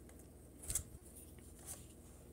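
Faint room tone with two soft clicks of handling, a little under a second in and again near the end.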